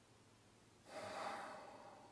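A man's heavy sigh: one breathy exhale that starts about a second in and trails off.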